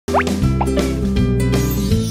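Animated channel intro jingle: bright music with sustained notes, with two quick upward-sliding pop effects in the first moments.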